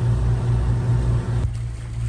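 A boat engine runs steadily with a low drone, under a hiss of wind and water. The hiss thins out about one and a half seconds in, while the drone continues.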